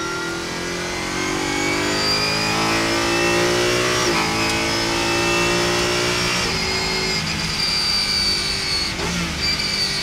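BMW car engine accelerating, its pitch climbing steadily. The pitch drops suddenly about four seconds in, like an upshift, and changes again about two and a half seconds later.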